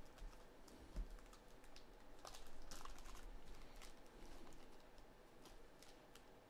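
Faint crinkling and crackling of a black plastic trading-card pack wrapper being handled and opened, a run of irregular small clicks.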